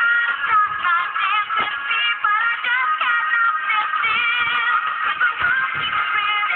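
A song with a high, wavering singing voice over backing music.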